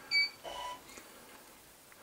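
A short, loud electronic beep at a high pitch, followed about half a second in by a fainter, lower tone.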